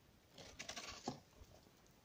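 Brief, faint crackling rustle of durian leaves and twigs brushing against the camera as it is pushed through the branches, about half a second to a second in.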